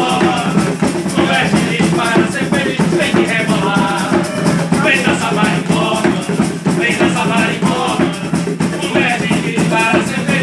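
Live band playing an upbeat marimbó rhythm: bongos and a shaker keeping a fast steady beat under acoustic guitar and keyboard, with a melody line on top.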